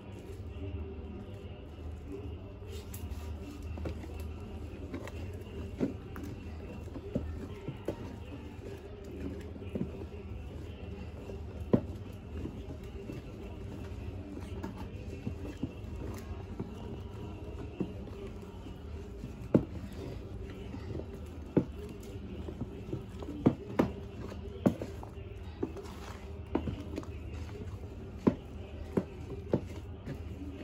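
A wooden stick stirring thick liquid soap in a plastic bucket, with scattered sharp knocks as the stick hits the bucket's side, more frequent in the second half.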